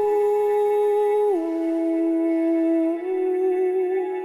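Background music: a wordless humming voice holds long notes of a slow melody. It steps down in pitch a little over a second in and rises again near three seconds, with a slight waver, over sustained background tones.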